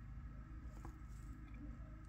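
Quiet room tone with a steady faint low hum and one faint tick near the middle.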